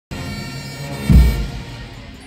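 Procession band music: sustained brass chords, with a loud bass drum and cymbal stroke about a second in.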